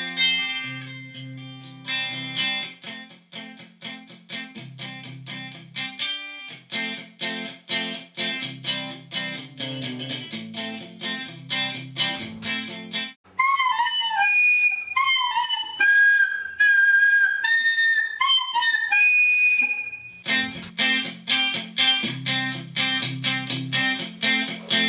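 Background music of a repeating picked guitar pattern over bass. About thirteen seconds in it gives way to a soprano recorder playing a short high melody, louder than the guitar, with notes that slide and droop. The guitar music returns about twenty seconds in.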